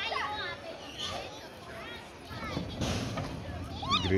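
Children's high-pitched voices calling and shouting as they play, in several short bursts.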